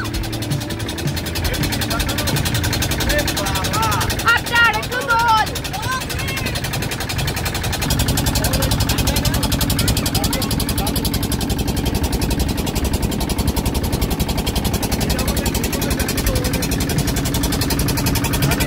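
Motorboat engine running steadily. Its drone grows louder and fuller about eight seconds in. Brief voices are heard a few seconds in.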